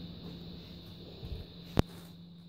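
A single sharp rifle shot from a 6.5 Creedmoor near the end, over a steady low hum.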